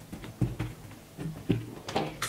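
A few soft taps and light knocks as thin raw sweet potato slices are picked up off a cotton cloth and set down.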